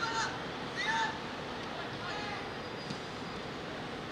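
Footballers shouting during a goalmouth scramble: three short, high calls over steady outdoor pitch noise.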